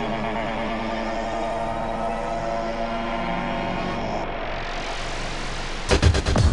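A steady, dense electronic drone, rising in a sweep over the last two seconds and ending in a quick cluster of sharp hits as a beat comes in.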